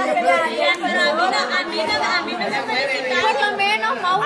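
Several women talking over one another in Spanish, a lively overlapping chatter with no break.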